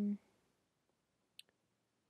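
A hummed 'mm' trails off at the very start, then near silence broken by one short, sharp click about a second and a half in, with a fainter tick just after: a click at the computer while a setting is being changed.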